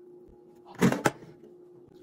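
A brief handling noise about a second in, two quick rustles or knocks close together, over a faint steady hum.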